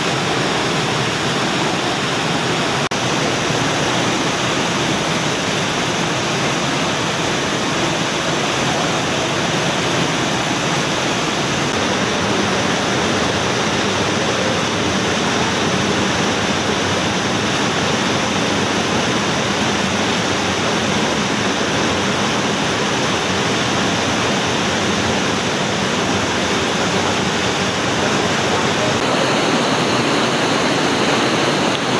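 Steady rush of a mountain torrent cascading through a narrow rock gorge, with a slight change in tone about twelve seconds in and again near the end.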